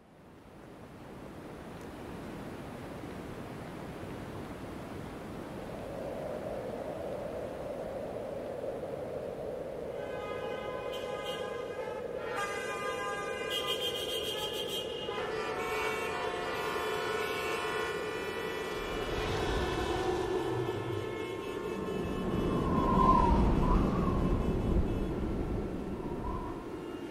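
Traffic-jam sound: a steady drone of traffic fades in, then several car horns honk in overlapping blasts from about ten seconds in. A deep engine rumble swells near the end.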